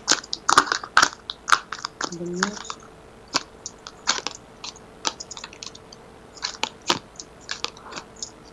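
Tarot cards shuffled and laid out by hand: irregular sharp snaps and flicks of the cards, thickest in the first few seconds and again near the end. A brief hum from a voice comes about two seconds in.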